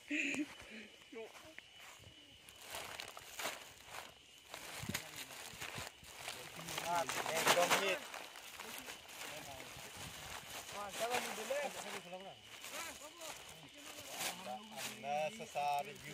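Thin plastic carrier bag full of snack packets rustling and crinkling as a hand opens it and handles it, with people talking at intervals.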